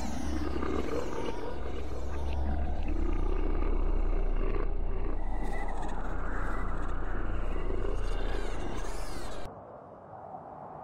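Horror sound effect: a deep rumbling drone with a growling roar that rises and falls over it. It cuts off suddenly just before the end.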